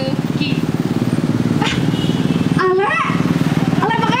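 A small engine running steadily with a fast, even putter, with a person's voice calling out over it about three seconds in.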